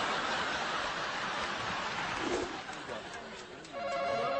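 Studio audience laughter, a dense even wash of sound that thins out over the last second and a half. Just before the end a steady held tone comes in.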